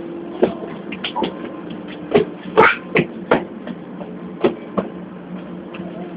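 Inside a Lisbon Metro ML90 car: a steady low hum from the train, broken by irregular sharp knocks and clicks, about nine over a few seconds.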